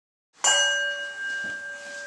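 A bell struck once about half a second in, ringing on with several steady tones, the highest fading first.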